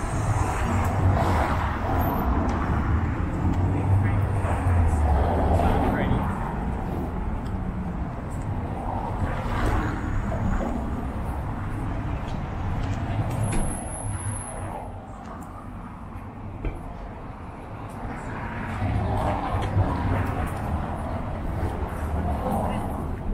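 City street ambience: car traffic passing with a low rumble that is strongest in the first six seconds, with the voices of passers-by talking.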